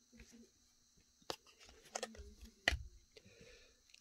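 Glossy trading cards being handled and slid through a stack in the hands: a few short clicks and soft scrapes, the loudest a little before the end.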